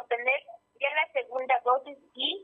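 Speech only: a woman reporting in Spanish over a telephone line, the voice narrow and thin.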